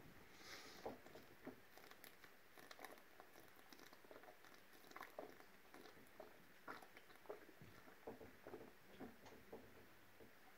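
Faint gulping as a man swallows beer straight from a glass bottle in one long draught, heard as soft, irregular clicks about once or twice a second.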